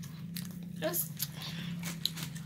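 Close-miked chewing and biting into sub sandwiches, with many short crisp crunches and mouth clicks over a steady low hum.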